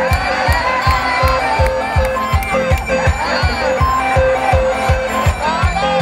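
Live band music from a stage PA, with no singing: a steady kick-drum beat under a repeating instrumental melody.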